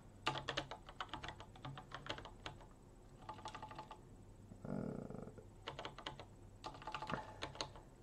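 Computer keyboard typing in short bursts of keystrokes with pauses between them, as a terminal command is typed. A brief soft noise comes just before halfway.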